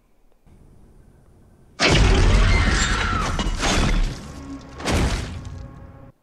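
Film soundtrack of a horror attack: an animatronic's bite on a victim's head, heard as a sudden loud crash and crunch with a dramatic music hit about two seconds in, then a second loud hit near the end.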